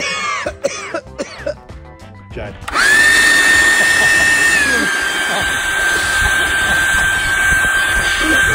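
Ryobi leaf blower switched on almost three seconds in: its motor spins up quickly to a steady high whine over rushing air, then settles a little lower in pitch about halfway and runs on.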